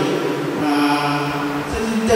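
A voice drawing out one long syllable at a steady pitch for about a second, chant-like.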